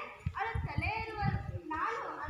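Speech: a girl's voice delivering stage dialogue in a school play.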